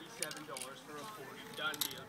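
People talking, with only a single word ("done") clearly picked out near the end.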